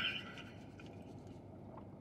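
A faint falling hum of approval at the start, then quiet chewing of a mouthful of cheeseburger with a few soft mouth clicks.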